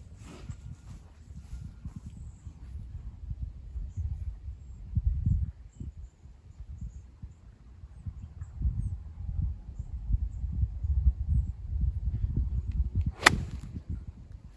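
A single sharp click of a golf iron striking the ball, near the end, over a low rumble of wind on the microphone.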